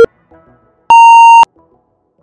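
Electronic interval-timer countdown beeps: a last short, low beep at the start, then a longer, higher beep about a second in that marks the end of the work interval and the start of the rest, over faint background music.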